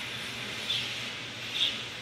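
Steady background room noise with a faint hum, and two brief, faint high-pitched chirps about a second apart.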